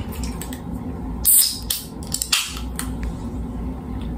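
A Sprite soda can being opened by its pull tab. It gives a sharp crack and a hiss of escaping carbonation about a second in, then a second, shorter hiss about a second later.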